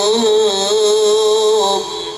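Male voice singing a qasidah, an Islamic devotional song, holding one long wavering note that fades out just before the end.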